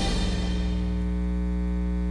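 Steady electrical mains hum with a buzz of overtones, from the recording chain, as the tail of the theme music dies away in the first half second.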